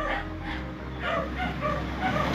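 A dog barking repeatedly in the background, a series of short barks.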